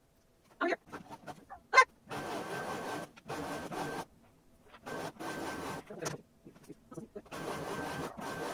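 Brother computerized embroidery machine, used as a sewing machine, stitching in short runs of about a second each with a steady motor whine, stopping and starting as the fabric is guided.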